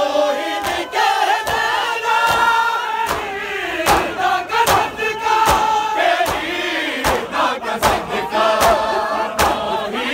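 A crowd of men chanting an Urdu noha (Shia lament) together, cut through by sharp slaps of hands on bare chests (matam), roughly one every two-thirds of a second.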